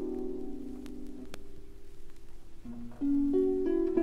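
Concert harp and chamber orchestra playing a classical-era harp concerto in A major, played from a vinyl LP. Held notes fade over the first second or so and the music thins to a quiet passage, then new harp notes with low strings come back in louder about three seconds in. There is a single sharp record-surface click about a second in.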